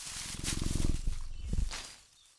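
Tiger vocal sound effect: a low rumble with a fast, even pulse, fading out near the end.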